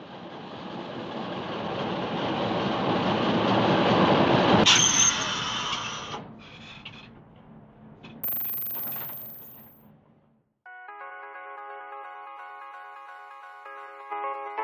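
Intro sound design: a rushing noise swell builds to a sharp hit about five seconds in and fades, then a second hit with a falling whoosh comes about eight seconds in. From about eleven seconds, electronic music with held synth chords plays.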